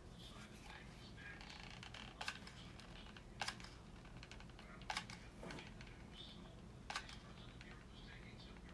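Four sharp clicks or taps, spaced one to two seconds apart, over a steady low hum.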